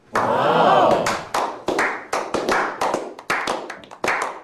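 A small group of people clapping, at roughly three to four claps a second. A short swelling sound fills the first second before the claps begin.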